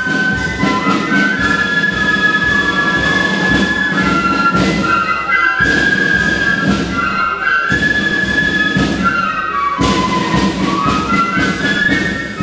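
Flute band playing a melody, the flutes holding notes in several parts at once over regular drum beats.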